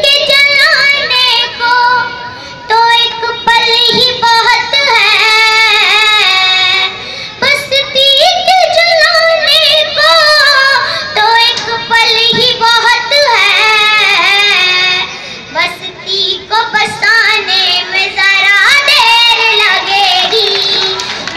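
A young girl singing an Urdu ghazal solo into a microphone, amplified through a PA loudspeaker. She sings in long held phrases with ornamented, wavering notes, taking short breaks between lines.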